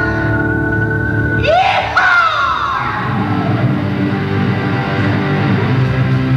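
Live rock band led by electric guitar: a held chord, then swooping, falling pitch glides about a second and a half in, after which the band plays on.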